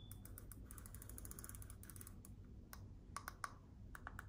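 Faint plastic clicking from a round wireless steering-wheel remote being handled: a quick ratchet-like run of clicks as its knurled ring and buttons are worked, then a few separate, sharper clicks in the last second or so.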